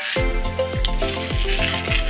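A metal ladle stirring bubbling, sizzling gravy in a pot, with one sharp clink a little under a second in. Background music with a steady beat plays over it throughout.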